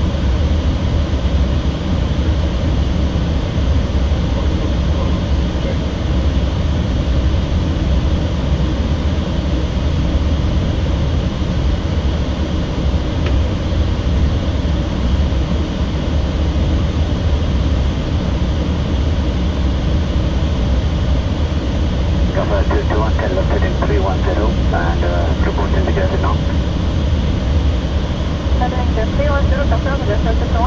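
Steady, loud cockpit noise of an airliner in flight, mostly deep air and engine rumble, with no change in level. Faint muffled voices come through briefly about two-thirds of the way in and again near the end.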